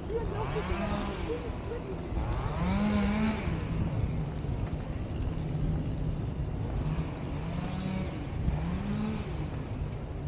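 Motor vehicle engines revving up and easing off three times, each a rising-then-falling note lasting a second or more, over a steady low hum.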